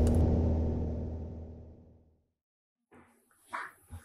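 Piper Warrior II's four-cylinder Lycoming engine droning steadily in the cockpit, fading out over about two seconds, then silence. A couple of faint, brief sounds come near the end.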